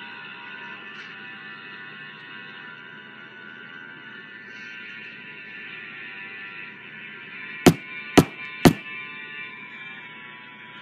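Background music, then near the end three sharp knocks on a door, about half a second apart, from a metal door knocker.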